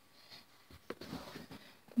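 Faint, light rustling with a single sharp click just under a second in.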